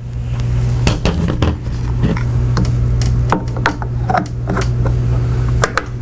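Scattered metallic clicks and knocks of rifle parts being handled: the trigger housing of a Browning Automatic Rifle being taken out and swapped. A loud steady low hum runs underneath.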